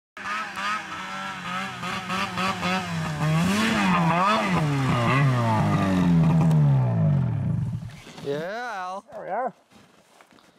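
Snowmobile engine revving up and down as the sled is ridden through deep snow, its pitch falling off just before the end. Two short wavering bursts follow.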